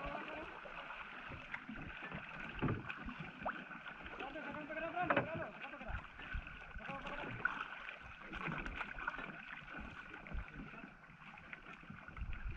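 Water lapping and splashing against the hull and bamboo outrigger of a small outrigger canoe on open sea, with a steady wash of wind and water and a few light knocks. A faint voice calls out about five seconds in.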